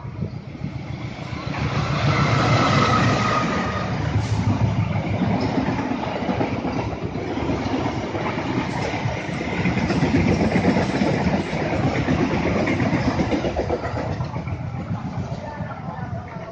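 Diesel-hauled passenger train passing close by: the sound builds as the locomotive comes past, then the coaches' wheels keep up a steady rumble on the rails before it eases off near the end.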